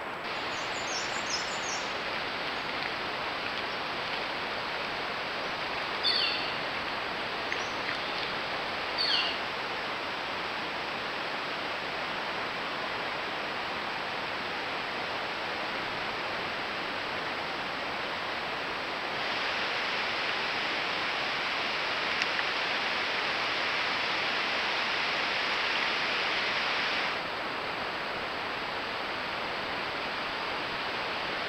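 Steady hiss of outdoor ambience picked up by a trail camera's microphone, with a few short high chirps about a second in and again around 6 and 9 seconds. From about 19 to 27 seconds the hiss is louder and brighter.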